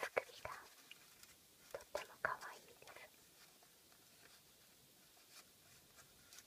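Close-up whispering into the microphone in two short stretches: one at the very start, and one from about two to three seconds in. A few sharp clicks come with the whispering.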